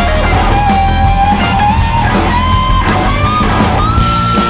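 Live rock band playing an instrumental passage with a loose shuffle feel. An electric guitar lead holds long notes that climb step by step in pitch over steady bass and drums.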